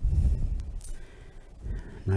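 A man's exhale blowing on a close headset microphone during a resistance-band exercise, a low puff at the start that fades within half a second, then a brief hiss of breath about a second in.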